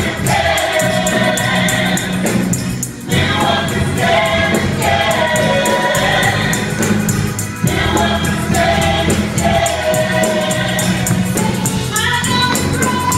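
Gospel praise team singing in harmony through microphones, over accompaniment with a steady, quick ticking beat. The sung phrases break briefly about three seconds in and again near eight seconds.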